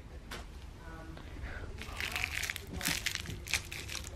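A crumpled ball of tape crinkling and crunching as a pet bats and mouths it on the carpet, a run of quick crackles starting about halfway through.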